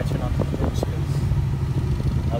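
A steady low rumble inside a car, with a few short clicks in the first second as a finger presses buttons on a JVC car stereo head unit.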